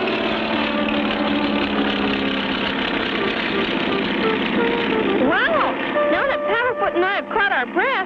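Steady drone of a cartoon propeller-airplane engine sound effect, with many held tones. From about five seconds in comes a run of quick pitched glides, each sweeping up and back down.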